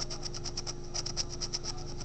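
Scratching the coating off an instant lottery scratch-off ticket: a quick run of short scraping strokes, several a second, over a steady low hum.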